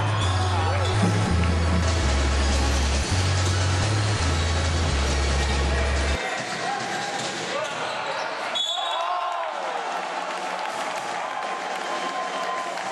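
Background music with a heavy bass line that stops suddenly about six seconds in, leaving the live sound of an indoor basketball game: a ball bouncing on the hardwood court and crowd voices in the gym.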